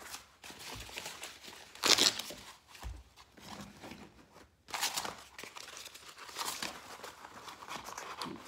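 Hot-melt carpet seam tape being unrolled and handled: crinkling and tearing, loudest in one burst about two seconds in, with more rustling in the second half.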